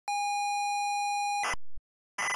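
Steady electronic test-tone beep held at one pitch for about a second and a half, cut off by a brief burst of static.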